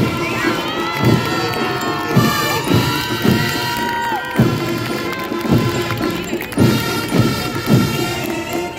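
Brass-and-drum marching band playing, its bass drum beating steadily about twice a second, with a crowd's voices shouting and cheering over the band through the first half.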